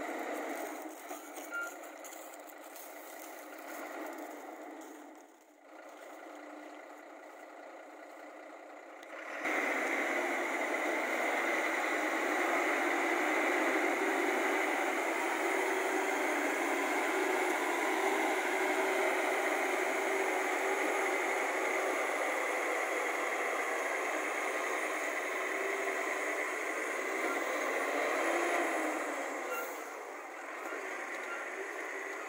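Diesel engine of a loaded BharatBenz tipper truck running as the truck drives off over rough dirt. The sound is quieter for the first nine seconds or so, then becomes louder and steady.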